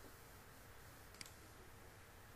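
Near silence with low room hum, broken by a single short computer mouse click about a second in.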